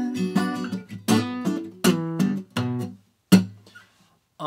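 Steel-string acoustic guitar strummed in chords, a stroke about every three quarters of a second, the loudest chord near the end left to ring out. It is picked up by a Deity V-Mic D3 Pro shotgun mic on the camera.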